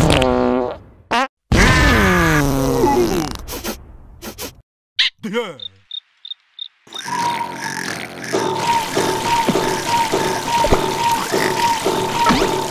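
Cartoon larva character's comic vocal sounds, two groans falling in pitch and then a short squeak. A cricket chirps six times. After that a thin steady whine with a slow regular beat sets in.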